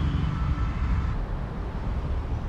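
A car running: a steady low rumble with no sudden sounds.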